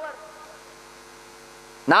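Steady electrical mains hum of several even tones, at a low level in a pause between a man's speech. His voice starts again just before the end.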